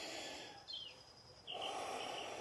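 A person's slow, deep breathing during a breathing exercise: a soft breath fading out early on, and another starting about one and a half seconds in. Faint chirps sound in the background.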